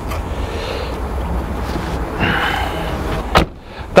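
A car's split rear seatback being pulled and folded forward from the cargo area: rustling handling noise with a brief scraping sound in the middle, then one sharp click from the seat mechanism near the end.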